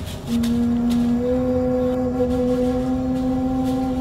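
A single long, steady horn-like note that begins just after the start and holds, lifting slightly in pitch about a second in.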